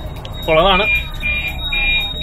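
Boat's fire alarm sounding: a high electronic beep repeating about twice a second.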